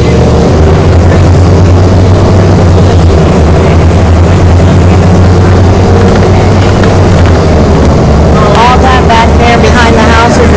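City bus engine and road noise from inside the moving bus, a loud, steady low drone. A voice joins in during the last second or two.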